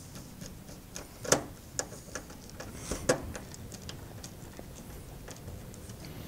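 Screwdriver and small metal hardware being worked on an inverter's sheet-metal casing: scattered light clicks and ticks, with two sharper knocks about one and three seconds in.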